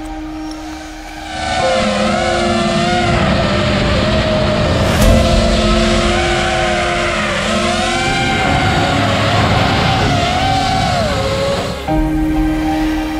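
FPV quadcopter's motors whining, the pitch swooping up and down again and again with the throttle as it flies, starting about a second in and cutting off just before the end. A short knock stands out near the middle.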